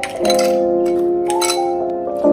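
Ice cubes dropping into a tall drinking glass, clinking against the glass and each other several times, over background music with sustained keyboard chords.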